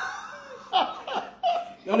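Men laughing heartily together, with a cluster of short laughs about a second in.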